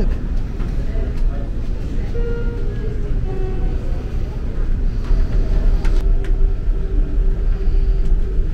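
Steady low rumble with faint voices in the background.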